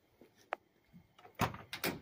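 The driver's door of a 1978 C10 pickup being opened: a sharp latch click about half a second in, then a louder run of clunks and rattles as the door swings open near the end.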